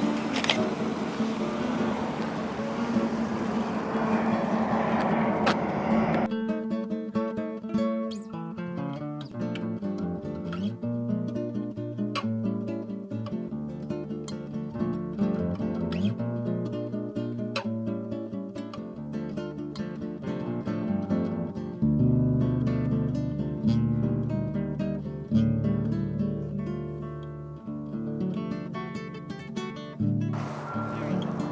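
Acoustic guitar music, plucked and strummed. For about the first six seconds it plays over a steady outdoor noise of wind and water. That noise cuts off suddenly, leaving the guitar alone.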